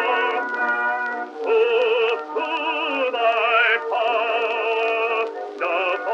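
Early acoustic gramophone recording of an Easter hymn: an operatic male voice singing held notes with wide vibrato over orchestral accompaniment, in short phrases with brief breaks. The sound is thin and narrow, with no bass and no high treble.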